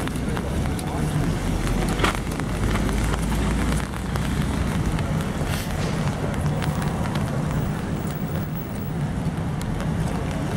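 Rainy city street ambience: a steady hiss with scattered small ticks and a murmur of voices. A low wind rumble on the microphone runs from about a second in to about four seconds in.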